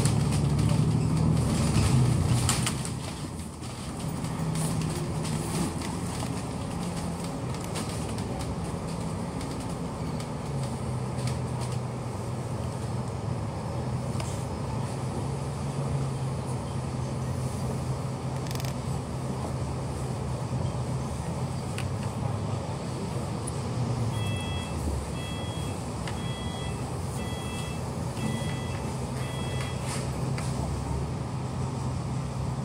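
KMB double-decker bus engine running, heard from inside the cabin: louder while driving in the first few seconds, then a steady low hum while stopped. Near the end an electronic beep sounds about once a second, six times.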